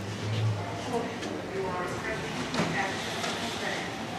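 Faint background voices of people talking nearby over the general hubbub of a busy shop, with a short low hum just after the start.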